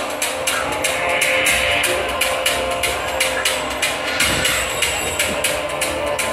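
Traditional Kadazan-Dusun gong music playing for a dance: a fast, steady beat of struck gongs over sustained ringing gong tones.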